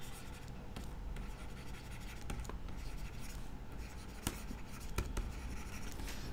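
Faint handwriting with a stylus on a tablet screen: soft strokes and a few light ticks of the pen tip, over a low steady background noise.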